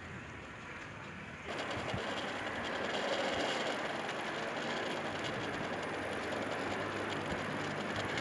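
Wheels of a hand-pushed rail trolley rolling and rattling along railway tracks, a steady clatter that suddenly gets louder about a second and a half in.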